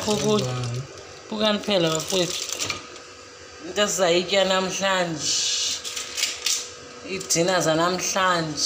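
Voices talking on and off, with a crinkling rustle of aluminium foil in the gaps, loudest between about five and six and a half seconds in.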